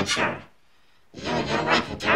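A voice distorted by 'G major' style pitch-shift effects, with several pitches layered over each other. It stops for about half a second near the middle, then resumes.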